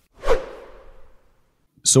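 A whoosh sound effect marking an edit transition: one sharp swoosh that fades out over about a second.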